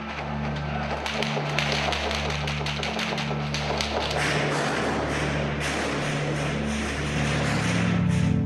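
Background music with a low note pulsing about once a second, over a noisy recording with a run of sharp clicks or cracks, most of them between about one and four seconds in.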